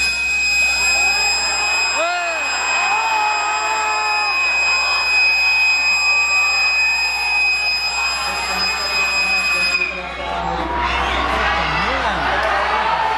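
A train's whistle sounds one long, steady high note for about ten seconds, over the talk of a crowd. The whistle cuts off sharply and the crowd's voices and cheering rise.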